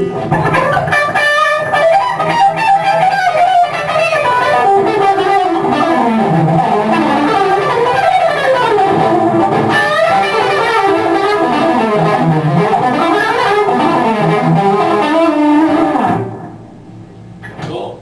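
PRS electric guitar played through an amplifier: fast melodic lead runs with sliding, gliding notes, on a guitar whose frets have been worn right off. The playing stops about 16 seconds in.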